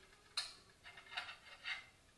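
A sharp clink about half a second in as a ceramic plate is lifted off the stovetop, followed by a few softer, short handling sounds.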